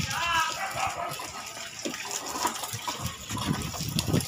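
A young child's high-pitched vocal sound in the first half-second, then the hard plastic wheels of a small ride-on toy car rolling with a rough, uneven rumble over concrete.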